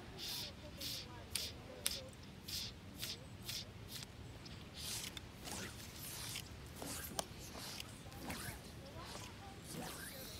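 Fly line being stripped in by hand through the rod guides after a cast: a regular series of short swishes, about two a second.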